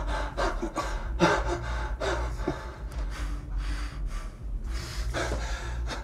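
A man breathing heavily in quick gasps, about three breaths a second, over a steady low hum.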